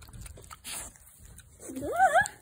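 A pig eating from a plate: faint smacking and licking, with a short breathy noise just under a second in. Near the end comes a short pitched sound that dips and then rises.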